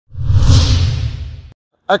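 A whoosh transition sound effect with a deep rumble, swelling quickly and fading away over about a second and a half before cutting to silence.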